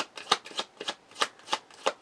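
A tarot deck being shuffled in the hands: a quick, uneven run of short papery card slaps, about five or six a second.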